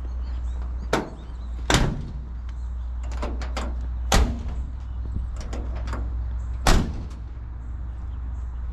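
Steel cab door of a 1966 Chevrolet C20 pickup being shut and worked: a series of knocks and latch clicks, with the loudest slams a little under two seconds in and again near the end. A steady low hum lies underneath.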